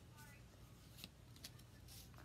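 Near silence with a few faint, light clicks from Pokémon trading cards being handled.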